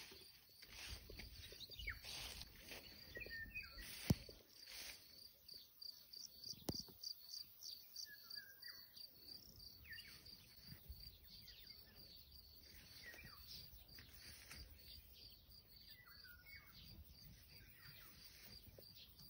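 Faint, steady chirping of crickets, about four chirps a second, with a few short bird calls and a couple of sharp knocks.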